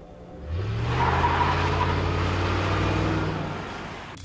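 Car engine rising in pitch about half a second in, then running steadily before fading near the end.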